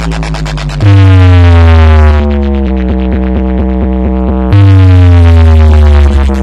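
Electronic dance music with very heavy bass, played loud through a large DJ loudspeaker stack as a sound-system test: falling synth tones over deep bass, a loud bass drop about a second in, a fast chopped stutter in the middle with the treble filtered away, and another bass drop near the end.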